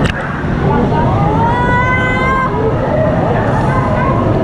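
Lazy-river water sloshing and rushing loudly against a camera held half-submerged at the surface. From about a second in, a brief high-pitched call rises and holds for about a second and a half over the water noise.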